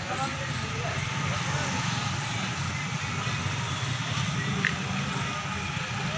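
Street noise: a steady low motor-vehicle rumble with people's voices in the background.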